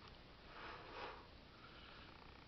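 A man's single breath sniffed in through the nose, soft and short, about half a second to a second in, over quiet room tone.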